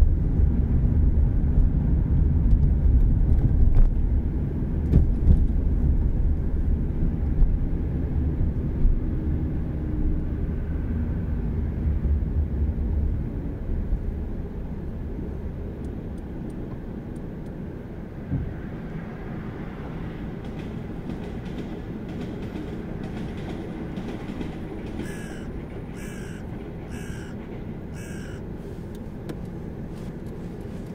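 Road and engine noise from inside a moving car, heavy at first, then easing off as the car slows to a stop in traffic and settles to a lower steady hum. Near the end come four short sounds about a second apart.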